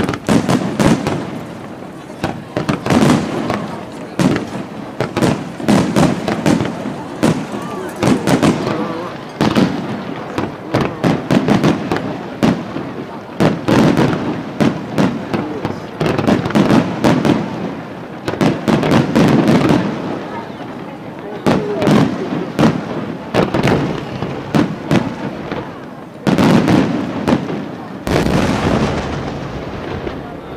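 Aerial fireworks display: shells bursting in a rapid, continuous barrage of sharp bangs and crackles, with a close-packed run of bangs near the end.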